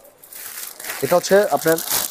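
Clear plastic packaging bag crinkling as a folded shawl is pulled out of it, a rustle that grows louder toward the end.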